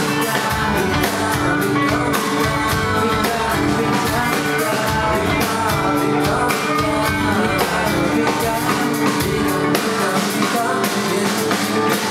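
Live band music: a male voice singing over strummed acoustic guitar and a drum kit keeping a steady beat.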